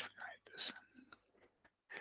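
Quiet, half-whispered speech: a man murmuring a word or two, with short silent gaps between the fragments.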